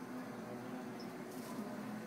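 Quiet room tone: a low steady hum with a few faint, soft rustles from handling food on the counter.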